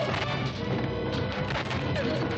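Soundtrack of a 1960s black-and-white horror film: music with several sharp crashes and blows through it.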